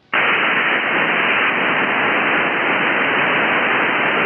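Steady hiss of a ham transceiver's receiver static, cut off sharply above about 3 kHz by the rig's SSB passband. It comes on suddenly just after a voice stops.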